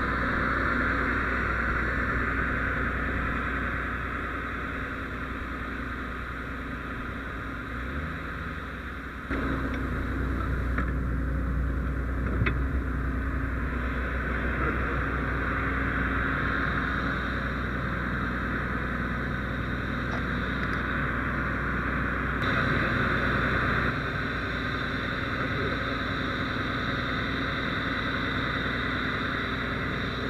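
Steady road-traffic and running-engine noise with a constant low hum, which shifts abruptly about nine seconds in.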